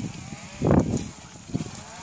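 A sheep bleats once, low and loud, just before the middle, with fainter bleats from the rest of the flock around it.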